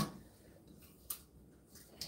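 Faint room tone with two short clicks about a second apart, the first the louder: the baking dish knocking lightly while butter is rubbed around inside it by hand.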